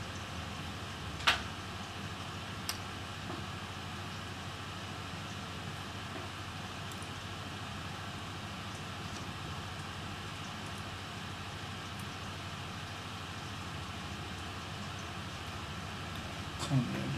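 Steady room hiss and low hum, broken by a sharp click about a second in and a fainter click shortly after, as small parts of an opened laptop are handled on a workbench.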